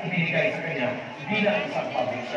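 A person's voice speaking over public-address loudspeakers.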